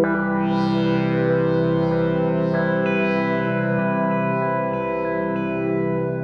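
Behringer DeepMind 6 analog polyphonic synthesizer playing its "Chine" patch: a sustained chord with chorus and echo, new notes entering about two and a half seconds in, and bright shimmering swells rising in the treble over the first half.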